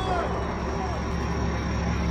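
A steady low rumble like vehicle traffic, with a faint steady high tone above it.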